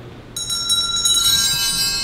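Altar bells (a cluster of small hand bells) shaken several times starting about a third of a second in, then left to ring on and slowly fade. This is the bell rung at Mass just before the consecration.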